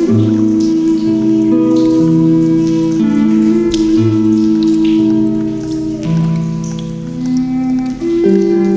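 Soothing instrumental music of Native American flute and Celtic harp, long held notes moving in slow steps, over a background of rain and water drops.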